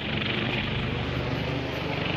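Police helicopter flying, its rotor and engine giving a steady, even noise.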